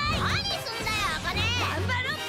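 Anime trailer soundtrack: a high-pitched voice shouts lines of Japanese dialogue in quick, sharply rising and falling exclamations over upbeat music.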